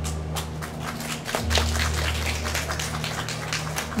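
Scattered hand-clapping from a small audience applauding at the end of a song, over a low sustained note that drops out briefly about a second and a half in.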